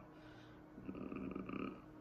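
A faint nasal sound from a person, like a breath or a closed-mouth hum, lasting about a second. It starts about a second in.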